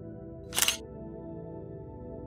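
Soft ambient background music with sustained tones, cut through about half a second in by one short, sharp burst of noise, an added sound effect.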